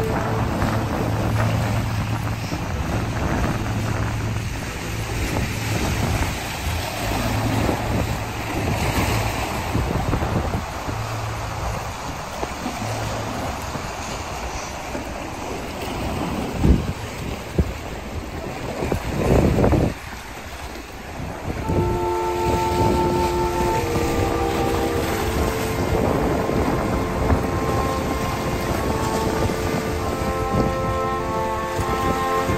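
Steady rushing noise like wind on the microphone, with a low hum through the first dozen seconds. Two loud thumps come past the halfway mark. About two-thirds in, several steady held tones begin.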